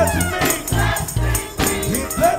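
Gospel choir singing with a live band: a bass guitar line moving under the voices, with steady drum hits keeping the beat.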